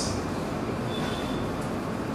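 Steady background noise of the room picked up by the pulpit microphones in a pause between words, an even hiss and rumble with no distinct events.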